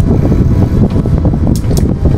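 Loud, steady low rumble of wind buffeting the action camera's microphone.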